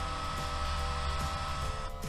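Cooling fan of an Emay Plus facial massager running in its cold mode: a steady whirring hiss with a thin steady whine.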